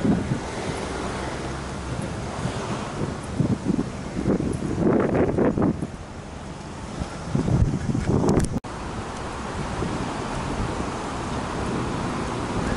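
Wind buffeting the camera's microphone while walking: a steady low rumble that swells into stronger gusts twice, the sound cutting out for an instant about two-thirds of the way through.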